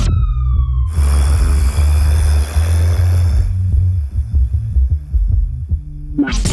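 A siren-like wail falling in pitch that cuts off about a second in, followed by a hiss that fades out by the middle, all over a deep steady bass from the track's beat.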